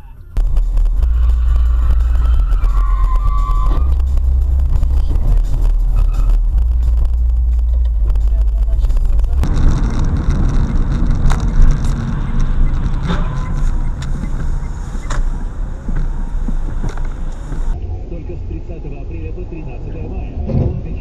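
Car interior driving noise picked up by dashcams: low engine and road rumble. It changes character abruptly about nine seconds in, with a few sharp knocks, and again near the end, where it becomes quieter and duller.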